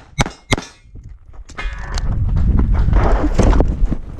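Three quick pistol shots from a CZ 75 SP-01 within the first second, ending a string of fire. From about a second and a half in, a loud low rumble of wind and handling noise builds up on the head-mounted camera as the shooter moves to the next position.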